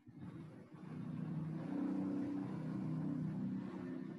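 A motor vehicle's engine going by, its sound swelling over about two seconds and fading away just after the end.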